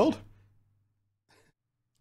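A man's voice finishing a word and trailing off into a breathy sigh, over a faint low hum, then near silence.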